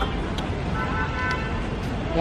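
Street traffic noise, a steady low rumble of passing vehicles, with a faint vehicle horn sounding near the middle.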